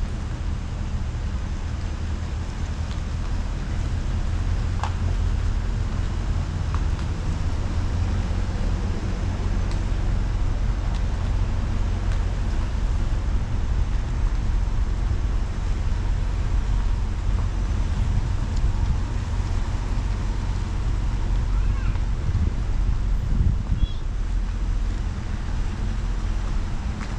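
Car engine and road noise heard from inside the cabin while driving: a steady low rumble with a few faint clicks.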